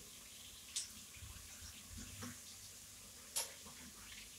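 Pork chops frying in a pan: a faint, steady sizzle, with two brief sharp clicks, one near the start and one near the end.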